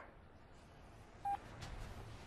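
A single short electronic beep from a mobile phone about a second in, the tone of a call being ended, over faint room tone.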